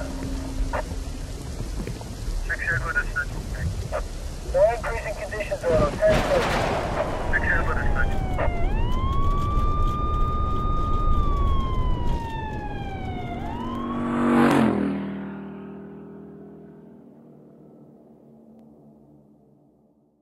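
Siren wailing, rising, holding and falling from about eight seconds in, over a steady noise like rain, with short bursts of voice earlier on. A loud hit about fourteen and a half seconds in leaves ringing tones that fade away.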